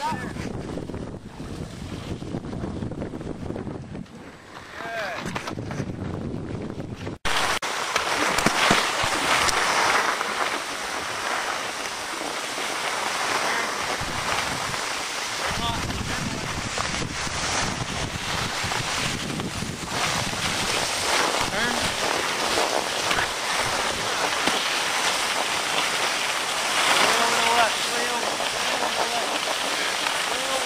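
Skis sliding over packed snow, with wind rushing across the microphone while skiing downhill. It breaks off sharply about seven seconds in and comes back louder. Faint children's voices come and go.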